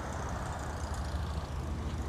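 Steady low rumble of an idling vehicle engine, with faint outdoor background noise.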